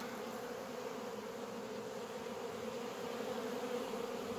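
Many honeybees buzzing around the hives in a steady, even hum. The bees are agitated, stirred up by the smell of leftover honey on supers set out for them to lick clean.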